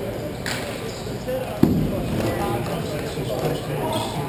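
Ice hockey game sounds in a rink: indistinct voices throughout. There is a short sharp click about half a second in, and a single loud bang about one and a half seconds in, the loudest sound.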